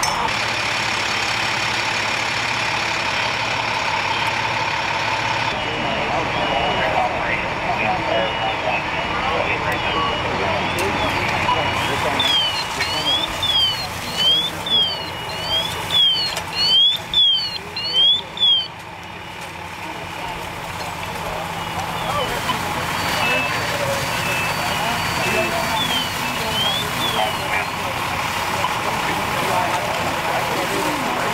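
Fire apparatus running steadily at a working house fire. About twelve seconds in, an electronic fire-truck siren yelps close by, rising and falling about twice a second and growing louder before it cuts off suddenly; a few shorter yelps come later.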